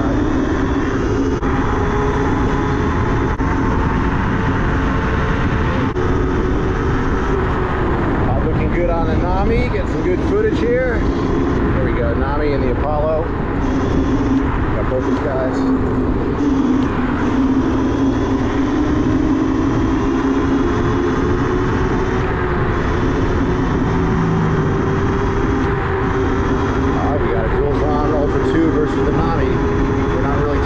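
Wind buffeting the microphone of a moving electric scooter, over a steady electric motor hum whose pitch drifts slowly up and down with speed.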